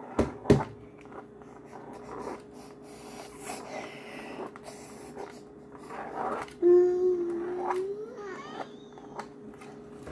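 Faint scratching of a pen on a toy drawing board, with two sharp clicks near the start. About seven seconds in, a child's voice hums a short 'mm' for about a second that rises at the end.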